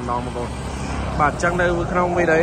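A person speaking, with a pause of about a second near the start, over a steady low rumble.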